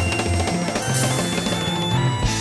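Progressive rock band playing a full ensemble passage: a drum kit keeps time under a moving bass line, and a high held note comes in about halfway through.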